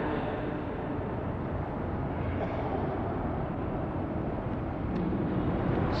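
Steady background noise of a hall on an old sermon recording: an even rushing hiss and rumble at a fairly high level, with no voice in it.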